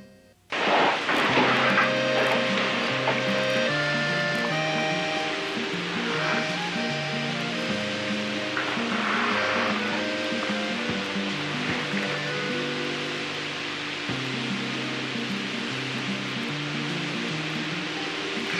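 Background music: a slow line of held notes moving step by step over a lower accompaniment, with a steady hiss beneath it. It cuts in abruptly after a brief silence about half a second in.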